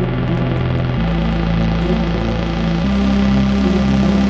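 Techno: a sustained deep synth drone with no clear beat, stepping to a new pitch about a second in and again near the end.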